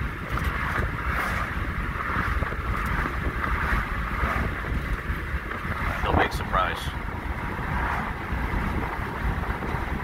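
Steady engine drone and road noise heard from inside the cab of a moving vehicle, with a rushing of wind.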